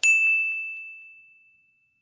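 A single bright 'ding' sound effect, struck once at the start and ringing out on one high tone that fades away over about a second and a half. It sounds as a '+1 Like' pops up in an animation.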